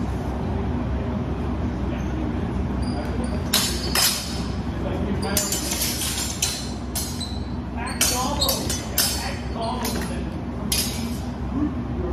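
Steel longsword blades clashing in sparring: a quick, irregular run of sharp metallic clinks with brief ringing, starting a few seconds in and bunched through the middle, with a steady low hum of the hall underneath.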